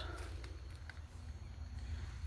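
Quiet background: a steady low hum with a single faint click about a second in.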